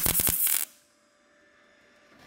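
MIG welder arc crackling in a short burst as it welds a steel sheet-metal patch panel, cutting off abruptly about two-thirds of a second in.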